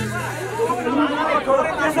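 Several people talking over one another in agitated chatter; the devotional music with its drum beats breaks off at the very start.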